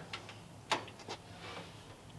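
Quiet, with a few faint clicks and taps, the loudest a little under a second in.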